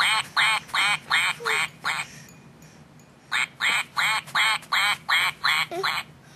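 A quacking toy duck playing a run of short quacks, about three a second, then pausing for about a second before a second, similar run.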